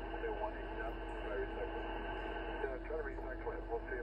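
Upper-sideband HF voice transmission from oceanic air traffic control, heard through a Yaesu FT-710 receiver: a voice in band noise and static, its audio cut off above about 3 kHz, with a steady low hum underneath.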